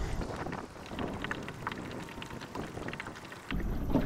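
Small water splashes and ticks around a kayak, with light wind on the microphone. About three and a half seconds in, a steadier wind rumble comes in.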